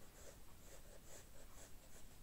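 Faint scratching of a pencil lead on paper, a series of short, light strokes as petal outlines are drawn.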